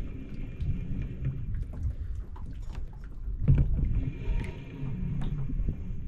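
Spinning fishing reel being cranked to bring a lure in, heard through a camera mounted on the rod. There is low wind rumble, scattered small clicks, and one heavier knock about three and a half seconds in.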